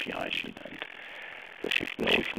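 Speech heard over a telephone conference line, trailing off and resuming after a short pause.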